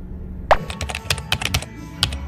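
Typing sound effect: a quick run of about a dozen key clicks over roughly a second, laid under on-screen text being typed out.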